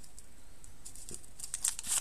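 Foil wrapper crinkling and tearing as it is pulled off a charcoal hand-warmer fuel stick, a quick run of sharp rustles in the second half.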